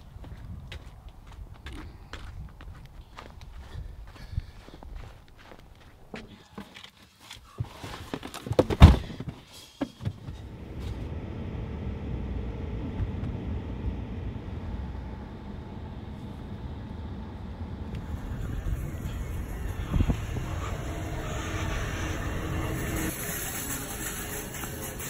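Footsteps on pavement, then a single loud thump about nine seconds in, followed by the steady low rumble of road and engine noise inside a moving car.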